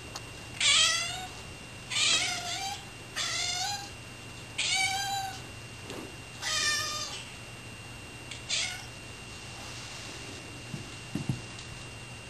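Domestic cats meowing insistently for canned tuna: six loud meows, each falling in pitch, spaced a second or two apart, then quieter with a couple of small knocks near the end.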